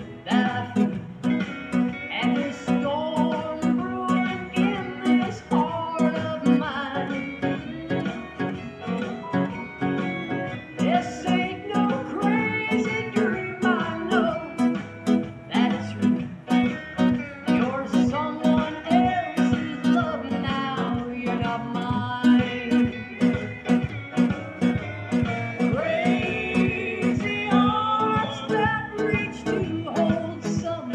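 Nylon-string classical guitar fingerpicked in a country accompaniment, with a steady bass-note pulse under the plucked melody and chords.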